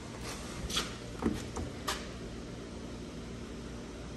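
Steady low hum with a few light clicks and taps, spread through the first two seconds.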